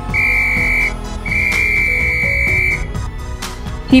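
Policeman's whistle sound effect blown in two blasts, a short one and then a longer one, each a single steady high note, over soft background music.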